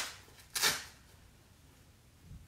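Hook-and-loop fastening on a cloth nappy being pulled open, a short rip about half a second in, then quiet handling.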